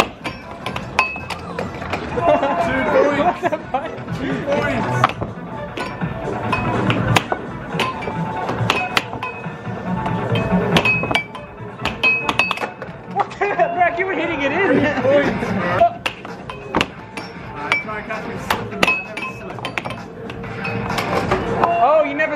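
Air hockey puck and mallets clacking as they are struck and knock against the table rails: many irregular sharp hits, with music and voices underneath.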